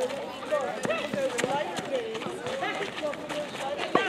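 Several netball players' voices calling and shouting across an outdoor court, overlapping and unintelligible, with a few sharp knocks, the loudest near the end.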